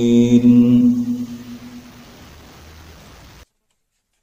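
A long, steady, chant-like held note fades out over the first two seconds. Faint hiss follows until the sound cuts off abruptly about three and a half seconds in, where the recording ends.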